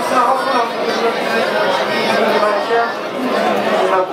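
A group of men reciting prayers aloud together, many voices overlapping at a steady level, one of them reading into a microphone.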